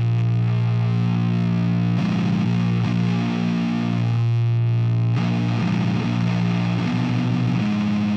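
Distorted electric guitar music, long heavy chords held for a couple of seconds each and changing about three times.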